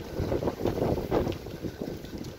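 Wind buffeting a phone's microphone, an uneven low rumble that rises and falls.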